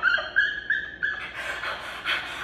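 A woman's high-pitched giggling: about four short squeaky notes in the first second, then trailing off.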